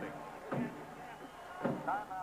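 Brief fragments of a man's voice over a low background hiss, with a short knock about half a second in.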